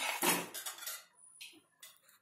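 Metal spoon scraping round a metal pan as it stirs a thick, sticky mixture of flour and sugar syrup. The scraping is strongest in the first second, then comes as two short scrapes.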